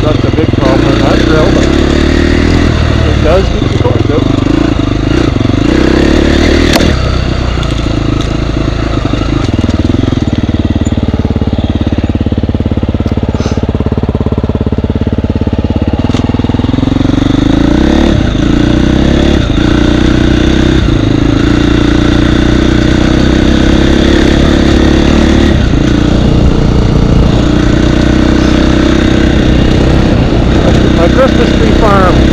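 Husqvarna dirt bike engine heard close up from the rider's camera, revving up and down on the trail. About a third of the way in it drops to a low idle for several seconds, then revs back up and rides on.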